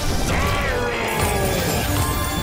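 Video slot game sound effects over the game's background music: a sudden hit, then a descending pitched swoop lasting about a second and a half, as a winning symbol expands and the win total climbs.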